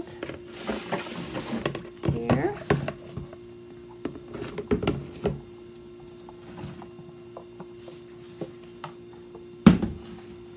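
Utensil handling on a steel worktable: scrapes, light clinks and knocks of a spatula in a stainless steel pitcher over a steady low hum, with one sharp knock near the end as the loudest sound.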